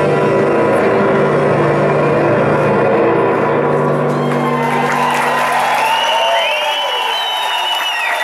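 An electronic band's long held synthesizer chord through the concert PA, fading out about halfway, while the crowd cheers and whistles more and more.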